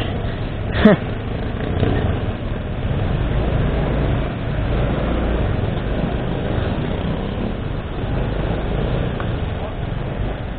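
Motorcycle engine running at idle, a steady low rumble.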